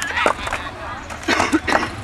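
Voices speaking in short phrases over a low steady hum.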